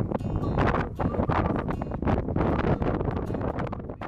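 Wind buffeting an outdoor microphone: a loud, gusty rushing noise that eases near the end.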